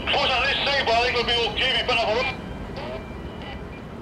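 Indistinct voices talking for about the first two seconds, then a quieter, steady background noise.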